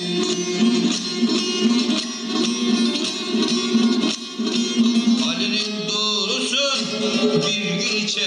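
Bağlama, the Turkish long-necked lute, played live, with a continuous plucked melody over ringing lower strings.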